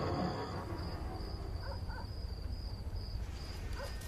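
Night ambience of crickets chirping, a high pulsing trill repeating a few times a second over a low steady hum, with two faint short calls in the middle and near the end.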